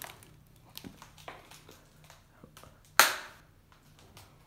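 Faint ticks and creaks of someone shifting their feet on a plywood board laid over a debris-strewn basement floor, over a faint low hum, then one sharp thump about three seconds in.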